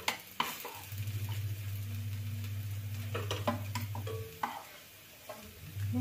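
Freshly churned homemade butter being stirred and scraped in a bowl, with soft wet noise and a few light clicks. A steady low hum runs under it, cutting out about four seconds in and returning near the end.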